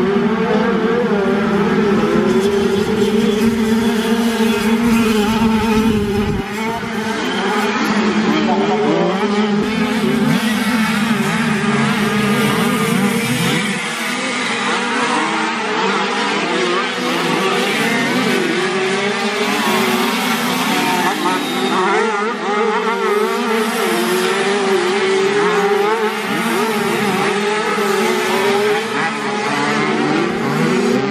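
Several classic 50cc two-stroke motocross bikes racing, their engines revving up and down over one another as the riders work the track.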